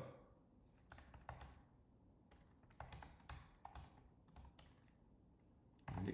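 Faint keystrokes on a computer keyboard: about a dozen irregular taps as a short command is typed and entered.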